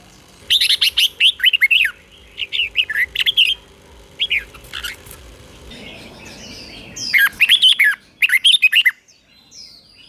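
Red-whiskered bulbul singing in short bursts of quick, bubbling whistled notes that sweep up and down, five phrases with short pauses between them, the last two near the end the loudest.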